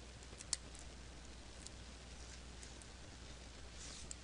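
Dissecting scissors snipping through a perch's belly wall near the pelvic-fin bone: a few faint clicks, with one sharper click about half a second in, over a low steady hum.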